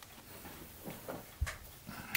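Quiet room tone with one light knock about one and a half seconds in and faint handling sounds.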